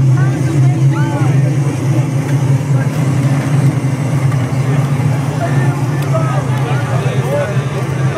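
A crowd of spectators talking and calling out over a loud, steady low rumble.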